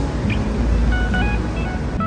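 City street traffic: a steady low rumble of passing cars, with faint background music over it.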